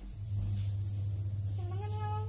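A cat meowing once, one long drawn-out call starting about one and a half seconds in, over a steady low hum that starts just after the beginning and is the loudest sound.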